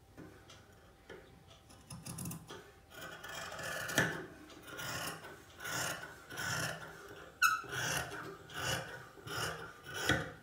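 Large dressmaking shears cutting through several layers of folded fabric, one crisp rasping snip after another, about every 0.7 seconds, starting about two seconds in.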